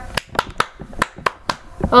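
Sharp clicks made by hand, keeping a loose beat of about two a second, with fainter ones in between; a sung voice comes in right at the end.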